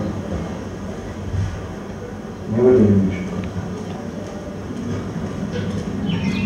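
Film soundtrack played through a hall's speakers: a low steady rumble, with a brief voice about three seconds in.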